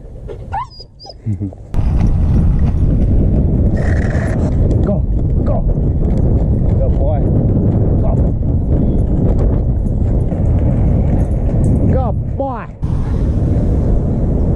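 Loud, steady rumble of inline skate wheels rolling on a concrete sidewalk, with wind rush on the microphone. It cuts off sharply near the end, just after a few short high whines rise and fall.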